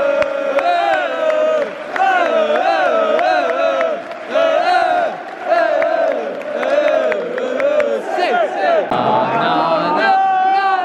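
A crowd of football supporters singing a chant together in unison, phrase after phrase with short breaks, with hand claps among the singing.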